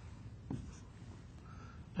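Faint strokes of a marker writing on a whiteboard, with a light tap about a quarter of the way in.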